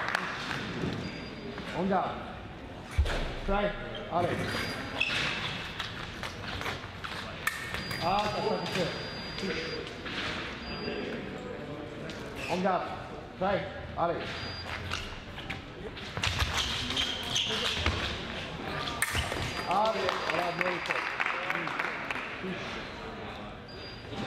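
Voices talking in a large, echoing sports hall, with scattered footsteps and knocks on the piste and wooden floor. A sharp knock comes about three seconds in and another just before the twentieth second.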